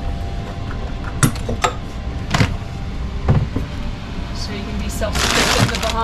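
Lids of a chest fridge-freezer being handled and opened: four sharp knocks in the first few seconds, then a rushing rustle about five seconds in, over a steady low rumble.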